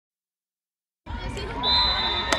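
Silence for about the first second, then open-air field ambience: a low rumble on the microphone and faint background voices, joined about half a second later by a steady high-pitched tone.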